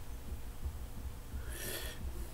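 A man's short, sharp breath through the nose about a second and a half in, while he feels the burn of a hot chili pepper. A low, steady rumble runs underneath.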